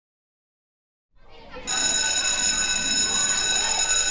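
An electric school bell ringing: a loud, steady, high ring that cuts in about one and a half seconds in. A room's background noise fades in just before it.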